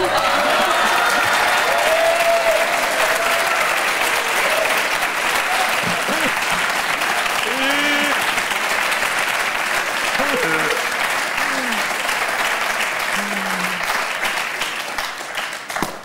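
Studio audience applauding steadily, with scattered voices and shouts over the clapping; the applause dies down just before the end.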